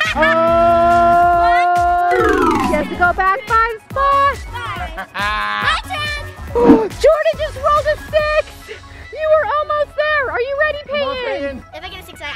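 Playful edited-in background music: a held chord for about two seconds that then drops away in a falling slide, followed by a quick, bouncy repeating tune.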